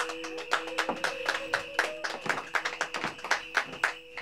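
A few people clapping by hand, uneven claps several a second, over soft background music with a steady note.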